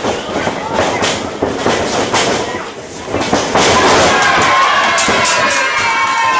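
Sharp thuds and slaps of wrestlers' bodies on the ring, over crowd chatter in the hall. From about three and a half seconds in, the crowd gets louder, shouting and cheering.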